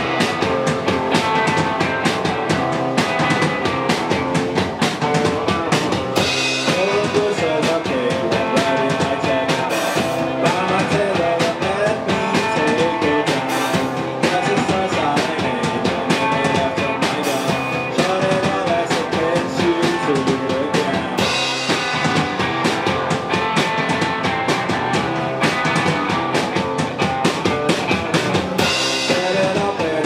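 Live rock band playing: electric guitar, electric bass and a full drum kit, loud and continuous.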